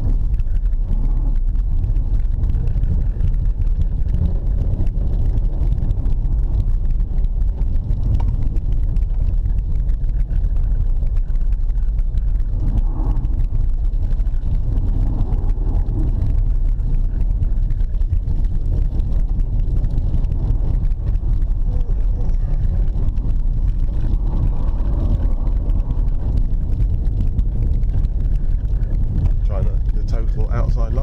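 Cabin sound of a BMW 325ti Compact's 2.5-litre straight-six working as the car slides on ice and snow: a loud, steady low rumble of engine and tyres, with a few brief swells along the way.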